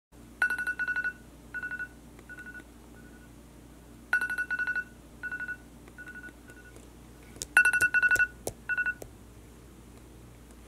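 Smartphone alarm beeping: quick electronic beeps come in a fast run and then in shorter, sparser clusters, the pattern repeating three times about every three and a half seconds. It stops near the end, when the alarm is switched off.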